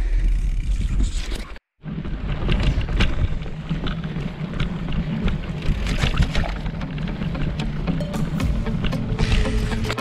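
Mountain bike riding over a rough moorland track and stone flagstones, heard from a bike-mounted camera: a continuous rumble with irregular rattles and knocks. Background music plays for about the first second and a half, then the sound cuts out completely for a moment before the riding noise starts.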